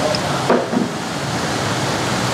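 Steady rushing background noise with no clear pitch, with a brief soft knock about half a second in.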